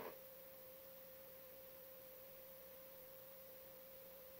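Near silence: room tone with a faint, steady single-pitched whine that holds unchanged throughout.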